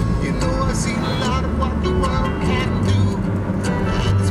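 Music with a singing voice, over the steady low rumble of a car driving.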